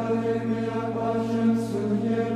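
Background music: slow sung chant, voices holding long notes over a steady low drone.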